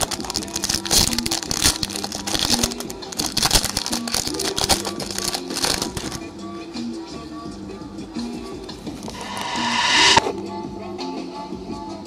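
Background music with a steady melody, over the crinkling and crackling of a Pokémon booster pack's foil wrapper being torn open and handled during the first half. Near the end a rising rush of noise builds for about a second and cuts off suddenly.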